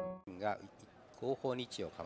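The last piano note of the background music cuts off at the start. After that come short, faint phrases of a man's voice over a light hiss, as from a keirin race broadcast's announcer audio.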